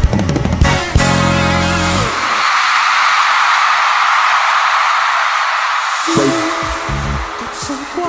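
Live concert pop music with a heavy beat that stops about two seconds in, giving way to a few seconds of steady high-pitched screaming from a large audience. Electronic music with a bass line starts again about six seconds in.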